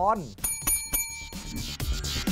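Desk service bell struck three times in quick succession, its bright ring fading over about a second.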